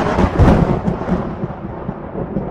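A sudden loud crash opening a rock song, breaking from silence into a dense, crackling rumble that slowly fades, like a thunderclap.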